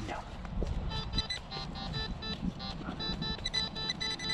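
Handheld metal-detecting pinpointer beeping in rapid pulses as it is probed around a dug hole, the beeps running into a steady tone near the end: it is sensing a metal target.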